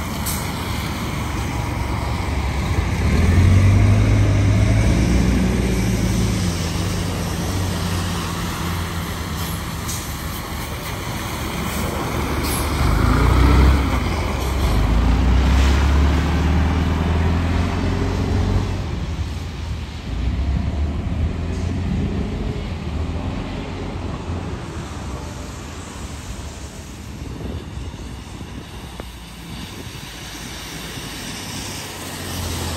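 Classic diesel transit buses driving past one after another, their engines loudest about four seconds in and again around fourteen to sixteen seconds in, with tyres hissing on wet pavement.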